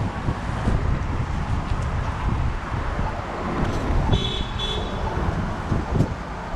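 Street traffic noise with a constant low rumble, and a brief high-pitched double beep about four seconds in.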